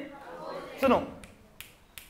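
A short spoken syllable from a man a little under a second in, then two sharp finger snaps near the end.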